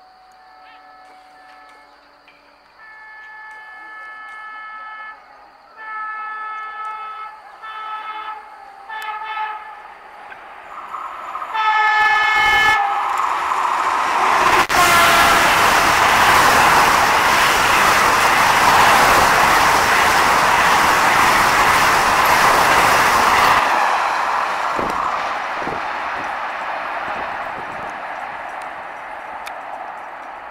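Vande Bharat (Train 18) electric trainset sounding its horn in a series of about five blasts as it approaches, the last short and loud. The train then passes at high speed with a loud rush of wheels and air that lasts about ten seconds and then fades away.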